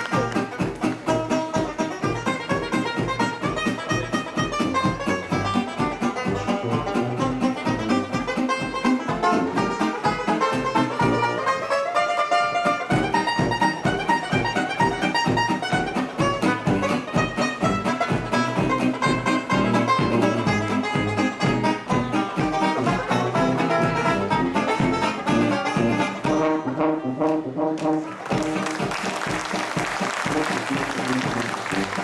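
Traditional New Orleans jazz band playing live: cornet, clarinet, trombone, banjo, guitar and sousaphone together over a steady beat. Applause breaks out near the end.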